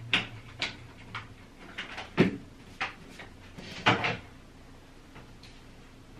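Light clicks and knocks, about eight in four seconds and the loudest about two seconds in, as an upright vacuum cleaner is handled and readied. Its motor is not running.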